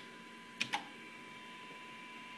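Faint steady 1 kHz tone over low hiss from the Super Star 360FM CB radio receiving a weak test signal at about S4, with a short double click about half a second in.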